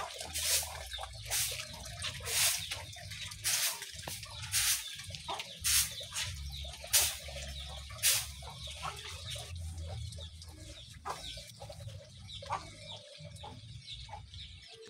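Chickens clucking, with a sharp call about once a second for the first eight seconds and fainter, sparser ones after.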